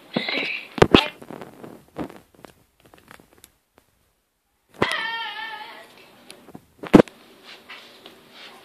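Knocks and bumps of a handheld camera being picked up and moved, sharpest about a second in and again near seven seconds. Between them, a drawn-out high wavering vocal sound, with a short one at the very start.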